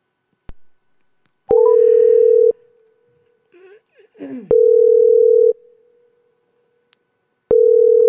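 Telephone ringback tone of an outgoing call ringing unanswered, heard through the phone line: a steady tone about a second long, sounding three times, each three seconds apart. A faint voice is heard briefly between the first two rings.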